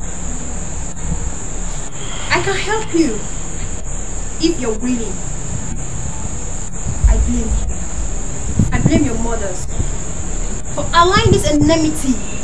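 Crickets chirping in an unbroken high-pitched night drone, with a few short voice sounds and a low thud about seven seconds in.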